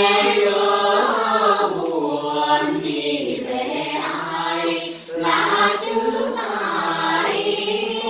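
A group of young men singing a Quan họ folk melody together, unaccompanied, on long held notes with wavering ornaments, breaking off for a short breath about five seconds in.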